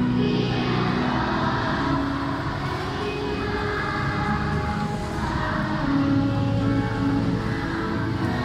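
Live church music with long held chords and notes that change every second or two.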